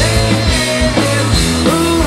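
Live hard-rock band playing at full volume: electric guitars, bass guitar and a drum kit.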